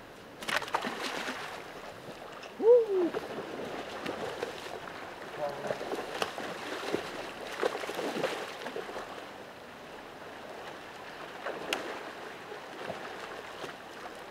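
Irregular splashing in shallow creek water, over steady running water, with a sudden burst of splashing about half a second in. A short wordless vocal exclamation is heard about three seconds in.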